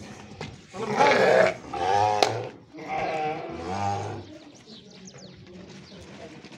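Sardi rams bleating: three loud, wavering calls in the first four seconds, then quieter.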